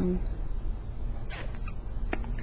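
A woman's drawn-out 'um' trails off just after the start, then a pause with a low steady hum and a short breathy hiss about one and a half seconds in.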